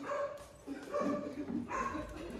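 A dog barking a few times, short pitched barks.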